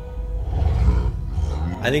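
A deep, low roar-like rumble from the episode's soundtrack, swelling about half a second in and easing off a second later, over the show's music score, played back into the room.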